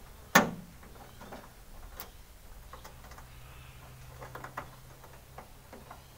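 Small clicks and taps of a hand screwdriver tightening a bolt into a bonnet protector under a raised car bonnet, with one sharp knock a fraction of a second in and another about two seconds in.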